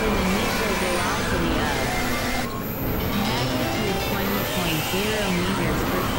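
A dense collage of several music tracks and recordings playing over one another: wavering, gliding pitched lines and voice-like sounds over a steady noisy hiss, with thin high tones. About two and a half seconds in, the upper range briefly drops out.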